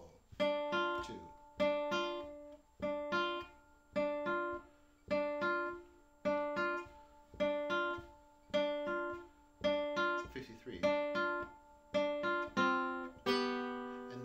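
Nylon-string classical guitar playing a repeated strummed chord about once a second, each with a quick second stroke after it. Near the end it strikes a different chord and lets it ring.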